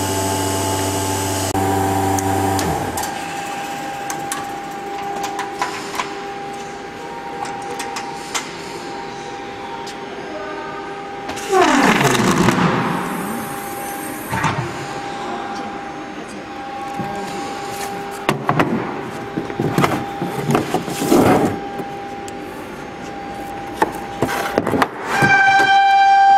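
Steady machine hum from the membrane forming press that cuts off about three seconds in, leaving a fainter steady tone. A loud rushing noise swells up about halfway, and scattered knocks and clatter follow as the machine is handled.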